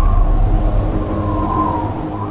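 Trailer sound design: the deep rumbling tail of a heavy boom, slowly fading, with a high wavering drone tone held over it.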